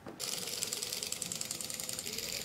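Remote-control robot beetle toy walking, its small electric motor and gear train driving the legs with a steady, fast rattling buzz that switches on abruptly just after the start.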